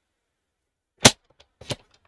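A paper trimmer's blade carriage gives one sharp click about a second in, then a few fainter clicks, as it is set on the paper to make a cut.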